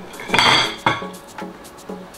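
Glass bottles clinking and rattling against one another and against ice in a glass bowl as one bottle is pulled out: a loud clatter about half a second in, then a sharp clink just before a second.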